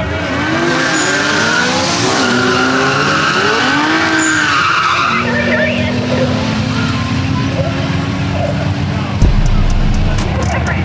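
Drag car doing a burnout: the tyres squeal while the engine revs up and down for several seconds, then it is held at a steady pitch. A low rumble comes in near the end.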